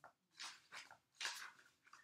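Faint, soft paper rustles, four or five in a row about half a second apart: pages of a card guidebook being flipped.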